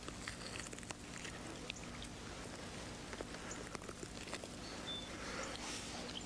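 Faint handling sounds of fingers working inside a gutted bird's body cavity: a few small wet clicks and rustles over a steady low hum.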